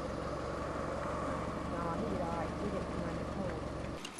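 A steady low hum, with faint voices talking in the background about two seconds in.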